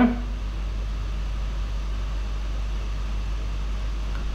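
A steady low hum with a faint hiss above it, unchanging throughout.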